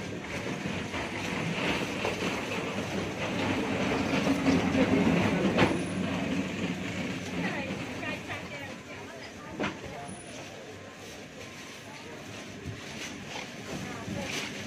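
Busy market background din with indistinct voices, louder in the first half and quieter after. A sharp click sounds about halfway through and another shortly after.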